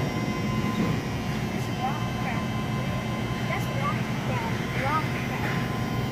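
Steady low mechanical hum of live-seafood tank pumps and aerators, with faint voices in the background.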